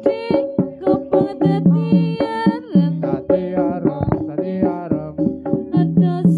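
Javanese jaranan accompaniment music: a gamelan-style ensemble with frequent drum strokes under held tones and a melody that wavers with a strong vibrato.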